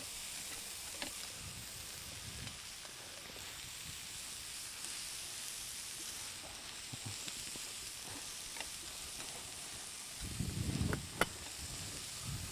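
Young cabbage, bacon and vegetables sizzling steadily in a frying pan on a gas burner, with faint scrapes and ticks of a spatula as they are stirred. Near the end there is a short louder burst of noise and a sharp click.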